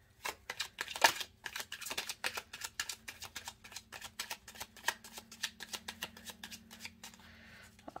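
A tarot deck being shuffled by hand: a quick, uneven run of card clicks and slaps that stops shortly before the end.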